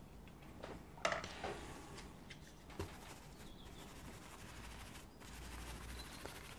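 Faint, scattered clicks and taps of a watercolour brush and painting gear being handled as the brush is loaded with paint, over quiet room tone.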